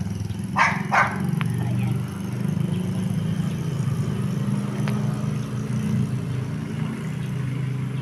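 A dog barks twice, about half a second apart, near the start. A steady low rumble carries on underneath and throughout.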